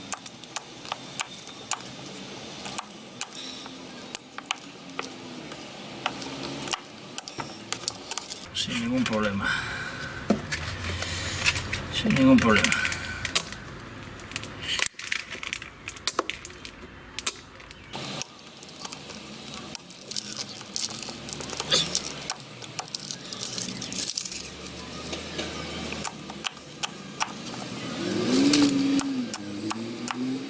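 Folding knife blade chopping through flat plastic strapping on a wooden board: a string of short, sharp snaps, roughly one or two a second, as each piece is cut off and the blade meets the wood.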